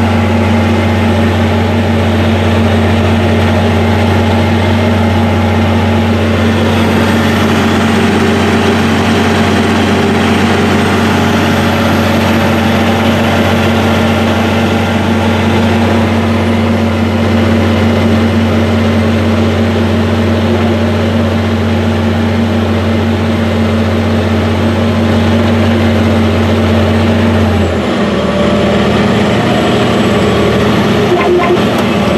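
Cab interior sound of an AGCO Challenger MT865C track tractor, its Caterpillar C18 turbocharged six-cylinder diesel running at a steady working pitch while pulling a disc ripper through corn stalks. The engine note holds even, then shifts abruptly near the end.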